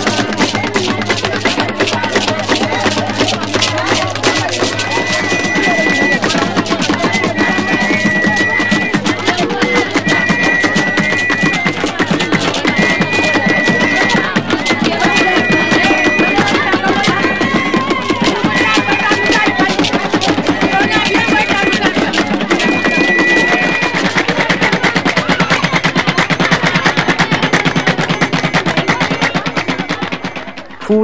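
Gambian water drums, upturned half-calabashes floating in basins of water, beaten in a fast, dense, improvised rhythm. A high two-note tone repeats every second or two over the drumming from about five seconds in until near the end.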